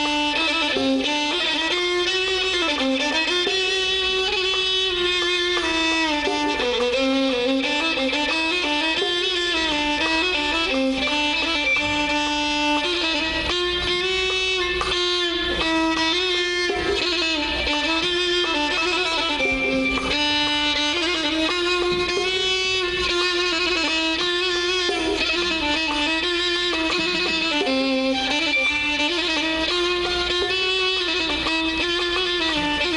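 A violin section playing a flowing melody in unison, sliding between notes, as part of an Arabic music ensemble.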